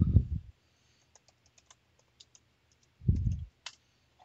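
Computer keyboard keys being typed, a quick run of light clicks as a password is entered. Near the end there is a duller, louder thump, then a single sharper click.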